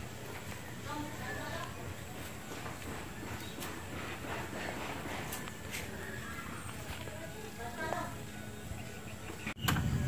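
Faint voices talking in the background over a low steady hum.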